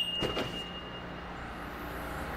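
A BMW car door being unlatched and swung open, with a few light clicks, while a steady high-pitched beep sounds and stops about a second in.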